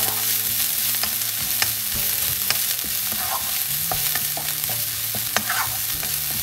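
Chopped onion, garlic and ginger sizzling in hot oil in a coated wok, with a steady hiss. A wooden spatula stirring them scrapes and taps against the pan in irregular clicks.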